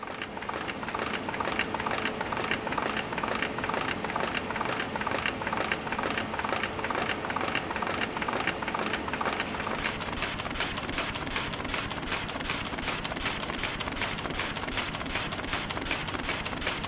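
Printing and paper-finishing machinery running, with a steady rhythmic mechanical clatter. About nine seconds in, a faster, hissing rhythmic pulse joins it.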